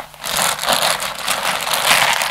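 A clear plastic bag of yarn crinkling and rustling as it is picked up and handled, a dense crackle that starts with a click and runs on.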